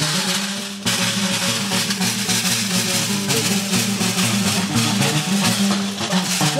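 Malian hunters' music: a donso ngoni (hunter's harp) plucked in a repeating pattern over percussion, with no singing.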